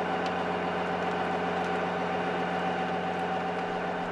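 Small fishing boat's engine running steadily at idle, an even hum.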